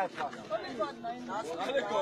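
Indistinct voices of several people talking at once, no words clearly made out.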